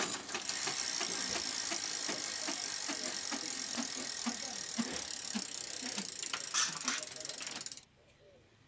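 Bicycle drivetrain being turned by hand on an upturned bike: the chain runs over a multi-speed freewheel with its ratchet pawls clicking, a rapid steady clicking, as the freshly replaced freewheel is tried out. It opens with a sharp knock and stops abruptly shortly before the end.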